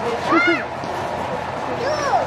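A child's short, high-pitched exclamations, twice, once about half a second in and once near the end, over steady outdoor background noise.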